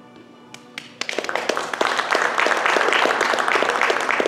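Applause from a small group: a couple of separate claps, then steady clapping from about a second in, over soft background music.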